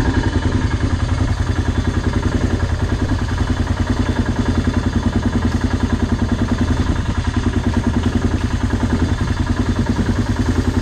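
1992 Honda Fourtrax 300's single-cylinder four-stroke engine idling steadily, with an even, rapid pulse.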